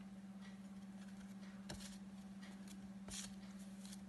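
Faint handling of a pack of paper flashcards, with soft brushes and slides of card against card about a second and a half in and again near three seconds, over a steady low hum.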